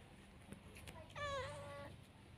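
A cat meowing once, a single drawn-out call a little over half a second long that begins about a second in, slides down in pitch at its start and then holds steady.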